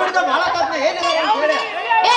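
Speech only: actors talking on stage.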